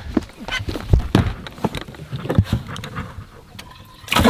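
A string of irregular knocks and thumps on a bass boat's deck and fittings as a freshly caught bass is handled and the livewell hatch is opened.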